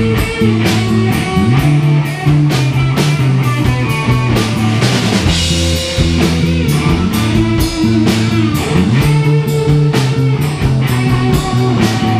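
Live rock band playing: electric and acoustic guitars over a steady drum beat.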